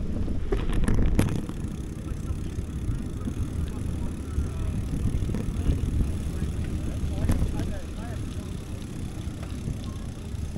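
Wind buffeting the microphone and bicycle tyres rumbling over a paved path while riding, with a few sharp clicks about a second in.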